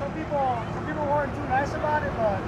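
Faint male speech, off-mic, over a low steady rumble.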